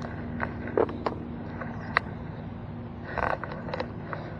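A steady low mechanical hum, with a few sharp clicks in the first two seconds and a short rustle about three seconds in, from a landed bass and fishing line being handled.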